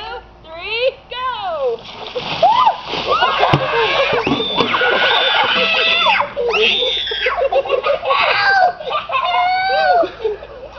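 After a shouted count, buckets of ice water are dumped over a group of adults and children about two seconds in, splashing onto them and the grass, and the group breaks into overlapping shrieks and screams from the cold that carry on to the end.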